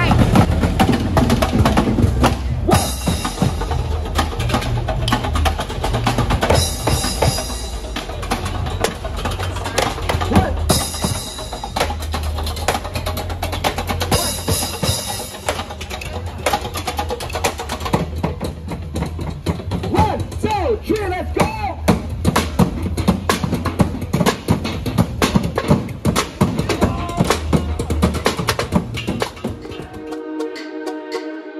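Street percussion group drumming a busy rhythm on painted drums, with repeated cymbal crashes.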